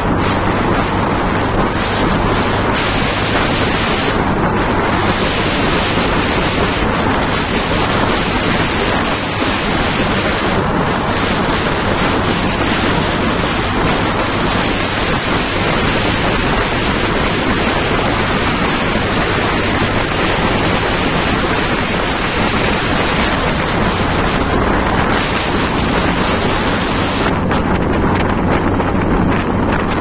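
Loud, steady wind buffeting the microphone while riding along a road, with a low steady hum underneath.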